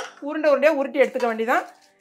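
A woman speaking, with no other sound standing out; she stops shortly before the end.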